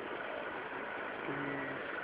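Steady background noise, with a man's voice briefly holding one low note about a second and a half in.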